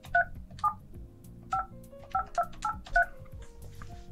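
Touch-tone keypad beeps as a phone number is dialed: about seven short two-tone beeps at uneven intervals, one per key pressed.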